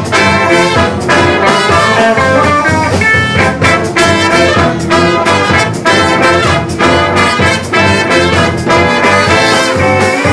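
Live funk brass band playing loud and without a break: trumpets, trombone, saxophone and sousaphone over a steady drum beat.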